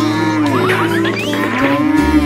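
A cartoon ox mooing, a long drawn-out moo over background music.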